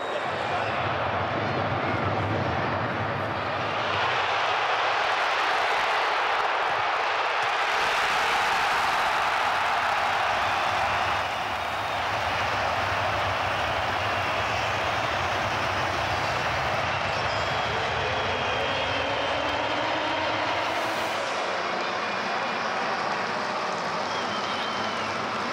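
Stadium crowd noise that swells into loud cheering about four seconds in, holds for several seconds, then settles into a steady din of the crowd.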